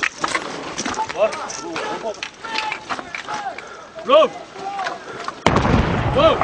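Men shouting in short calls, the loudest about four seconds in, over scattered sharp cracks. The sound turns abruptly louder and fuller shortly before the end.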